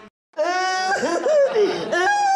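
A man laughing loudly and heartily, starting about a third of a second in after a brief silence, in long drawn-out peals that waver up and down in pitch.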